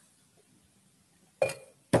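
Near silence for over a second, then a brief spoken exclamation, 'oh'.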